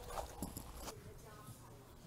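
A few faint knocks and clicks in the first second, over low background noise.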